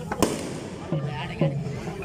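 A single loud, sharp crack about a quarter-second in, ringing briefly, amid a kaliyal stick-dance troupe; men's voices call out twice after it, falling in pitch.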